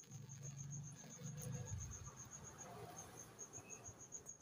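Cricket chirping in a steady run of quick, high pulses, about six a second, faint. A low rumble sits under it for the first two seconds.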